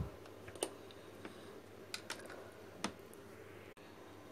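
Faint, sharp clicks of a plastic blender jar being handled just after blending, four or five scattered ones over a low steady hum.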